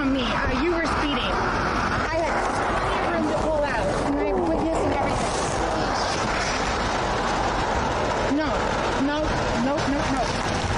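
People's voices, a few short spells of talk about a second in, around two to four seconds in and near the end, over a steady rushing noise from the street or wind on the microphone.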